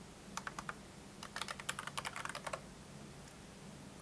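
Typing on a computer keyboard: two quick runs of keystrokes. The typing stops a little past halfway.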